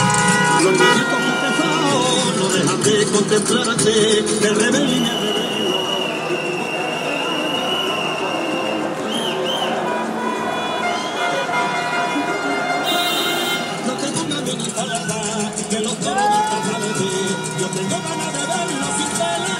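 Street celebration heard from inside a moving car: music playing and people shouting, with car horns honking. A long high steady tone is held for about four seconds in the middle.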